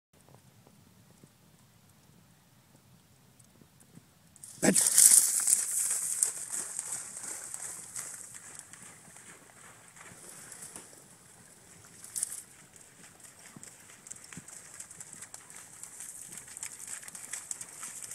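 Dry reeds and brush rustling loudly as the springer spaniel bursts off through the vegetation about four and a half seconds in, the rustling hiss fading slowly as it heads out, with one sharp crackle of brush a few seconds later.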